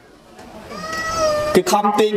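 A cat meows once: a single drawn-out meow, about a second long, rising and then falling in pitch.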